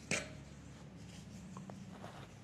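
One sharp knock just after the start, then faint rubbing and rustling of a woven plastic sack being handled.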